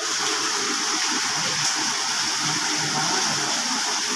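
Heavy rain pouring steadily, an even hiss with no breaks.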